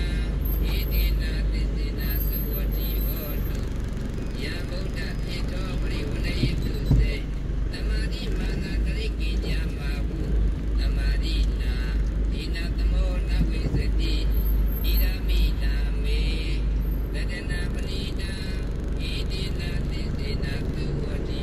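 Steady low rumble of a car's engine and tyres heard from inside the cabin while driving, with one short thump about seven seconds in. Faint patterned chirping or voice-like sounds come and go above the rumble.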